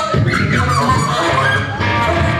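Free-improvised noise jazz played live by alto saxophone, electric guitar and electric bass: dense, loud and shifting, over a steady low bass. A high pitch slides downward about half a second in.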